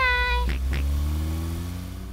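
Cartoon car engine sound as the car pulls away: a steady low hum with a whine that rises slowly in pitch, preceded by two short clicks about half a second in. A voice calls out a drawn-out goodbye at the very start.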